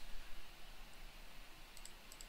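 Faint clicks of a computer mouse button: a single tick a little before one second in, then a quick pair near the end, over low room hiss.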